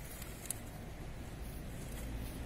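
Steady low background noise of an open-air gathering, with no voice standing out and one faint click about half a second in.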